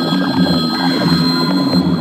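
Dark psytrance at 176 BPM: a fast, pulsing synth bass line with a steady high synth tone over it.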